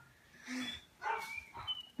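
A dog barking twice, the barks about half a second apart, with a brief high whine near the end.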